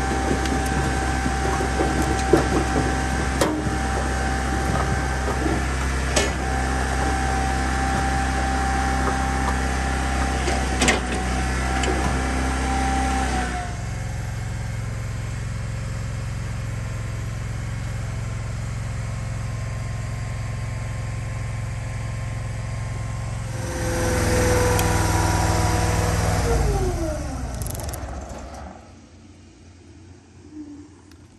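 Dyna firewood processor's engine running with split wood knocking on the conveyor. About halfway through the knocking stops and the engine settles to a steadier, lower drone; near the end it swells briefly, then its pitch falls as it winds down to a stop.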